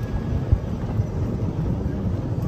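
Low, steady rumble of a golf cart riding along an unpaved road, with wind buffeting the microphone and a single sharp bump about half a second in.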